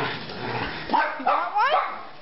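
Small dogs yipping excitedly, with several short, high-pitched yips in quick succession about a second in.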